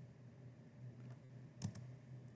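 Near-quiet video-call audio: a faint steady low hum, with a couple of soft clicks about one and a half seconds in.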